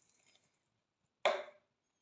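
A single short knock about a second in, dying away quickly; otherwise quiet.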